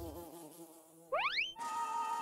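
Cartoon sound effects: a quick rising whistle-like glide about a second in, then a steady buzz for a cartoon bee.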